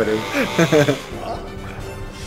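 Laughter and a voice in the first second, over background music with steady held notes.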